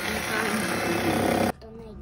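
Electric hand mixer running, its beaters whisking thick chocolate batter in a stainless steel bowl, a steady motor sound that cuts off suddenly about one and a half seconds in.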